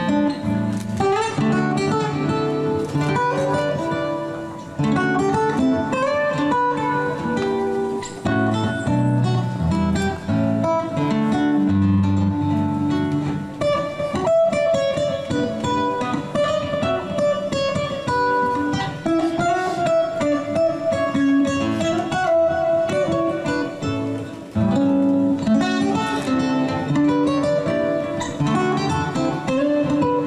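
Solo nylon-string acoustic guitar playing an unaccompanied medley of Christmas songs, a plucked melody over its own bass notes.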